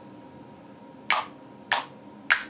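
A pair of finger cymbals (zills) struck together: the high ring of a stroke fades out, then two short, clipped strikes about a second in and again just before the end, which die away quickly without ringing on.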